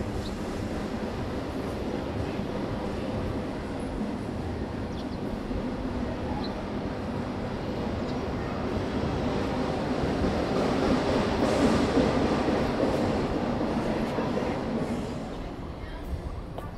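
A steady rumble of car noise, engine and tyres together, that builds to a peak about twelve seconds in and eases off near the end.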